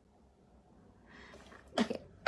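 Near silence for about a second, then a soft breathy intake of breath and a short spoken word near the end.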